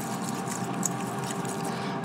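Metal fork stirring and lightly clinking against a glass mixing bowl, with a few small ticks over a steady mechanical hum, typical of a countertop air fryer running.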